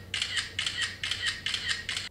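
Smartphone camera shutter sound, clicking over and over about four times a second as a burst of selfies is taken.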